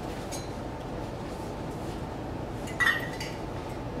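A light clink of kitchenware about three seconds in, with a short ring, and a fainter tap near the start, over steady room noise.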